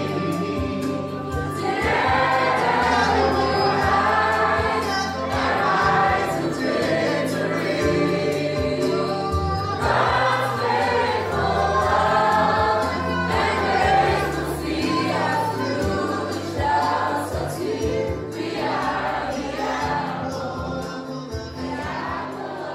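A choir singing a gospel hymn over instrumental accompaniment with a steady bass line.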